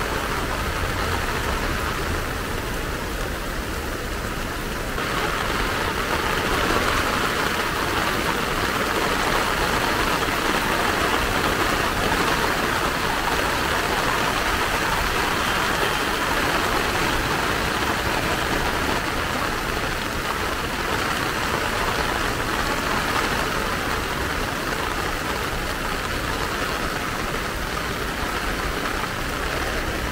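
Heavy rain falling steadily on paving and trees, with a low rumble underneath. The rain grows a little louder about five seconds in.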